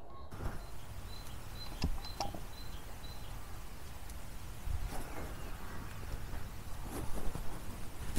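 Low, steady background rumble with a few soft clicks and knocks scattered through it, and a faint short high tone repeating several times in the first few seconds.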